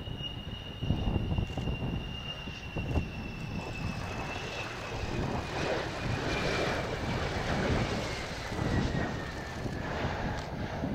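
F-4EJ Kai Phantom II's twin J79 turbojets on landing approach: a high engine whine that slowly falls in pitch over a steady jet noise as the fighter passes low toward touchdown.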